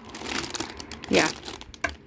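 Plastic packets and wrappers crinkling and rustling as a hand rummages through a crowded drawer of toiletries.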